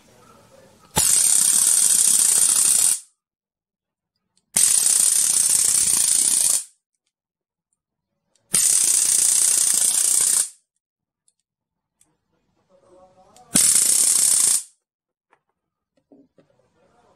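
A homemade high-voltage arc lighter, powered from a power bank, sparking between its two electrodes in four bursts: three of about two seconds each and a shorter last one, each starting and stopping sharply. The loud, hissing, crackling arc shows the extra power the power bank gives it.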